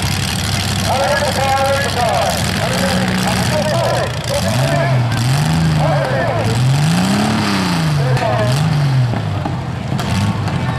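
Demolition derby car engines running, one revving up and down several times over the steady sound of idling engines.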